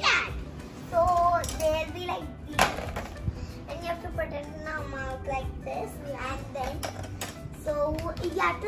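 Young girls talking.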